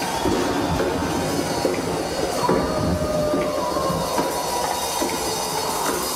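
Atmospheric recorded show soundtrack played over loudspeakers: a steady rumbling, noisy texture with a thin high tone that wavers slightly in pitch, with no clear beat.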